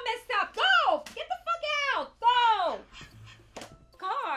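A woman crying out in a series of high-pitched wails, each rising and then falling in pitch.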